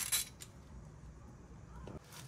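A scraping rub that stops just after the start, then a single light click and a quiet stretch.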